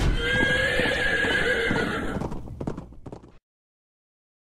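A horse neighing, followed by a short run of hoofbeats clopping. The audio then cuts off abruptly about three and a half seconds in.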